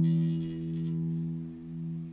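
A live rock band holding one low sustained note that rings on steadily and slowly fades, in a pause between full-band passages.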